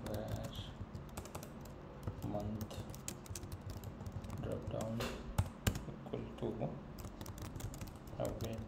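Typing on a computer keyboard: an irregular run of key clicks, with two louder clicks about five and a half seconds in.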